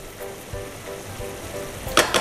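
Risotto simmering and sizzling in an aluminium sauté pan as a spatula stirs it, with soft background music underneath. A sharp click comes at the very end.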